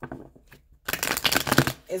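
A deck of tarot cards being shuffled by hand: a few light card clicks, then about a second in a quick, dense run of card-on-card flicking that lasts roughly a second.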